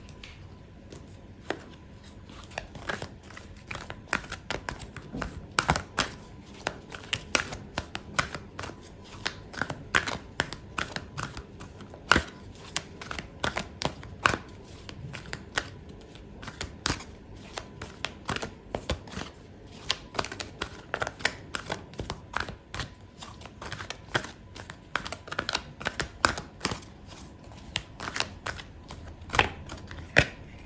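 A deck of tarot cards being shuffled by hand: a long, irregular run of sharp card snaps and clicks, several a second, over a quiet room.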